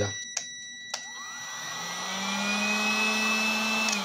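A Total electric heat gun clicks on about a second in. Its fan motor spins up with a rising whine, then blows steadily as it heats an oven thermostat to test that the thermostat opens. Near the end it clicks off and starts winding down, and a multimeter's high continuity beep is heard in the first second.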